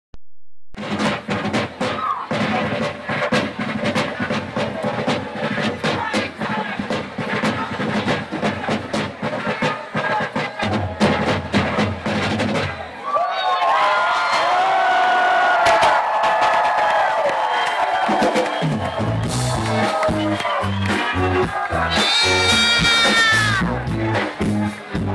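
Live band playing loud music: a busy drum beat for the first twelve seconds or so, then a break of about five seconds with sliding high notes over the band, before a steady bass-and-drum beat comes back in.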